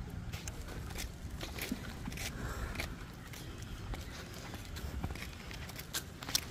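Footsteps on asphalt, about two a second and evenly paced, over a steady low rumble from a pushed stroller wagon's wheels rolling on the pavement.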